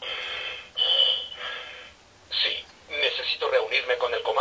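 A Buzz Lightyear talking toy's communicator playing its radio effect through its small speaker: two bursts of static with a high whistle, a short crackle, then a tinny radio-style voice starting about three seconds in.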